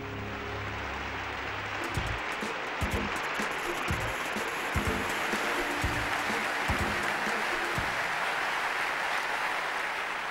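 The closing music of a film montage ends about two seconds in, as a large theatre audience breaks into steady, sustained applause.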